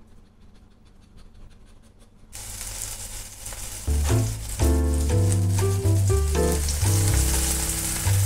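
Faint room tone for about two seconds, then food sizzling in a frying pan starts abruptly. From about four seconds in, background music with a bass line plays over the sizzling.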